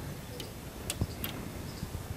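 A few short clicks from pressing the power button on a desktop computer tower. The computer does not start.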